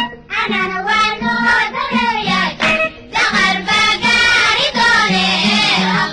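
A Somali patriotic song (hees wadani): voices singing a melody over an instrumental backing.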